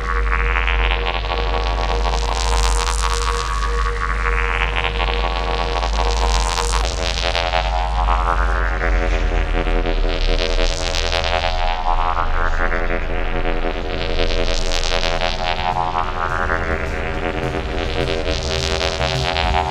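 Ambient electronic synthesizer music: a sustained drone of held tones over a deep bass, with a filter sweep rising and falling about every four seconds.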